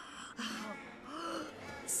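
A man gasping and groaning in strain: a few short breathy moans whose pitch rises and falls.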